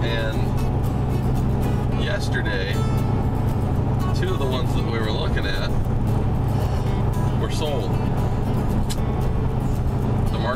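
Steady low drone of road and engine noise inside the cab of a pickup truck moving at highway speed, with music and a singing voice over it.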